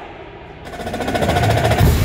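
Indoor percussion ensemble playing a fast drum roll that starts about half a second in and swells louder, ending on a heavy low hit near the end.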